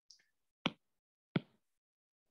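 Two sharp taps of a stylus tip on an iPad's glass screen, about 0.7 s apart, after a fainter click right at the start, made while a handwritten line on the slide is selected and moved.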